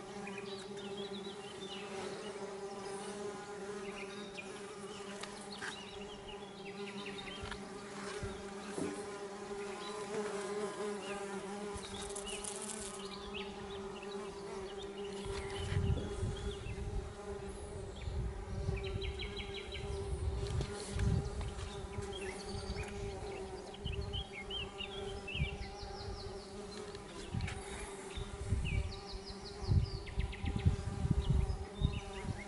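A crowd of solitary bees buzzing at their nest burrows in a sandy cliff face: a steady, many-voiced hum.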